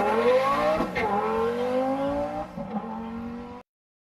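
Car engine accelerating hard, its pitch climbing, dropping at a gear change about a second in and climbing again, then fading and cutting off shortly before the end.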